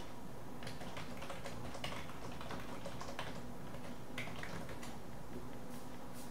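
Typing on a computer keyboard: irregular key clicks at a quick, uneven pace, over a faint steady hum.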